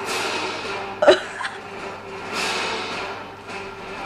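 Background music playing, with a short, loud vocal sound with a quick pitch glide about a second in, from a man biting into a burger.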